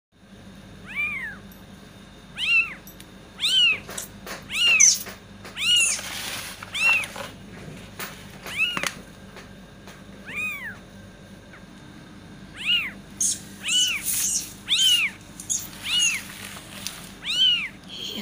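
Kittens mewing: about fourteen short, high-pitched mews, each rising and then falling in pitch, coming roughly one a second with a pause around the middle. A few soft clicks and rustles come between them.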